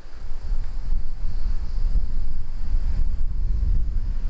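Wind buffeting the microphone: a loud, uneven low rumble. Insects chirr faintly and steadily in the background.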